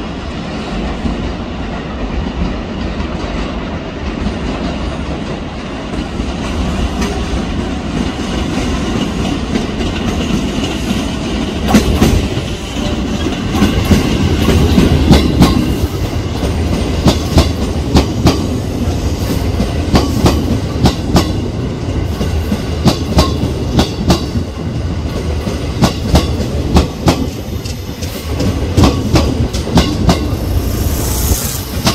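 A JR West 281/271-series Haruka limited express electric train rolling slowly into the platform over the station points. A steady low rumble swells as it draws close. From about halfway in, the wheels clack sharply and often over the rail joints and switches.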